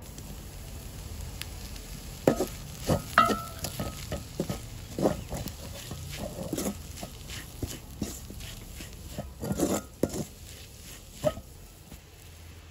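Wooden spoon stirring, scraping and knocking against a metal pan in irregular strokes as onion and flaked salmon are mixed, over a light sizzle.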